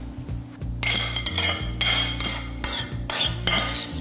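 A spoon clinking and scraping against a china bowl while scooping out avocado mixture: a run of sharp, ringing clinks, about seven, starting about a second in, over quiet background music.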